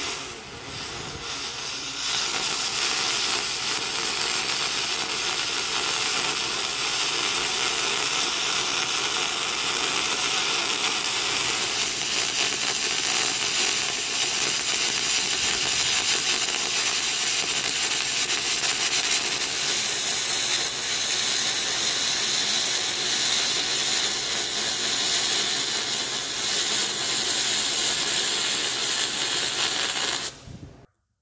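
Lincoln Magnum 250LX spool gun MIG welding one-inch aluminum, the arc running as a steady, dense hiss and crackle while a multi-pass bead is laid. It runs at about 425 inches a minute of wire at 25 volts, electrode positive. It is quieter for the first couple of seconds, then holds steady.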